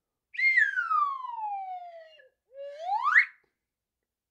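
Slide whistle sound effect: one long glide falling in pitch, then a short, quick glide rising back up near the end.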